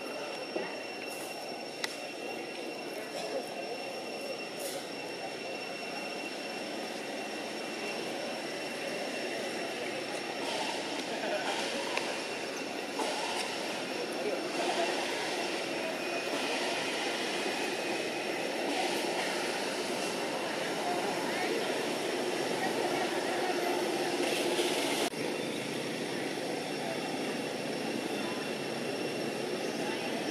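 Steady outdoor background noise: a broad low rush with a thin, steady high-pitched whine over it and faint voices in the background, growing a little louder partway through and changing abruptly near the end.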